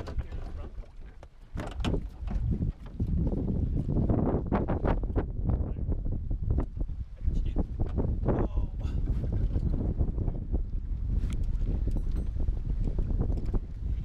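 Wind rumbling on the microphone, with splashing and knocks against the boat as a hooked muskie is brought to the landing net alongside.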